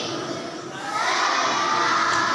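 A large group of children's voices raised together in unison, dipping briefly a little under a second in before the next phrase swells up.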